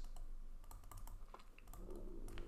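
Faint, irregular taps and scratches of a stylus writing on a pen tablet.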